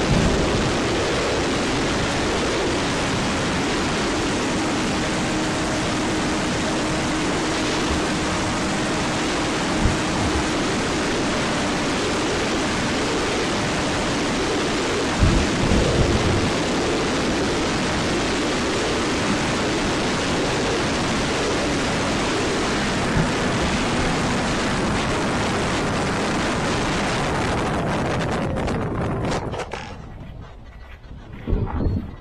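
Steady rush of wind over the onboard camera microphone of a fast-flying RC plane, with a faint hum from its Sunnysky 2216 brushless motor and propeller underneath and a few buffeting thumps around the middle. The noise fades out near the end.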